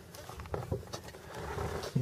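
Vehicle driving slowly on a rutted dirt road: low engine and tyre rumble with small knocks and rattles from the bumps, growing a little louder toward the end.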